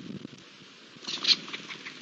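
A short, harsh animal call about a second in, followed by three or four fainter clipped calls in quick succession.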